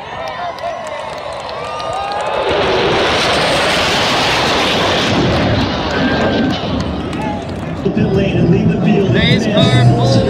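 Flyover of a formation of military jets: the jet noise swells about two seconds in, is loudest for a couple of seconds, then slowly fades as the jets pass.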